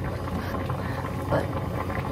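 A pot of soup cooking on the stove, giving a steady low hum.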